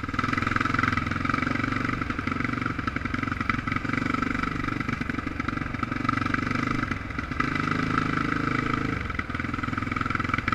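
Motorcycle engine running at a steady pace as it rides along a sandy wash. Its pitch shifts in the second half and drops briefly about nine seconds in before picking up again.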